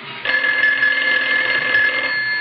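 Desk telephone bell ringing steadily, starting about a quarter second in.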